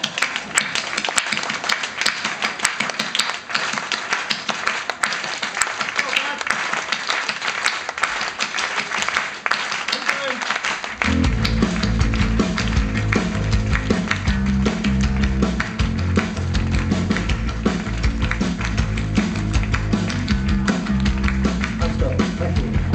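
Live indie rock band starting a song after a count-in. At first only bright, quickly strummed electric guitar plays, with no bass. About halfway through, bass guitar and drum kit come in and the band plays on together, fuller and louder.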